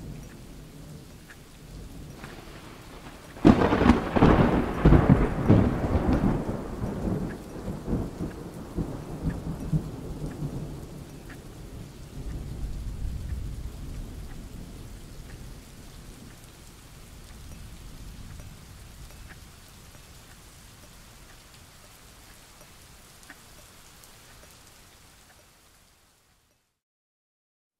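Thunderstorm: steady rain with a sudden loud thunderclap about three and a half seconds in, its rumble rolling on and slowly dying away, with a second rumble around twelve seconds in. The storm fades out near the end.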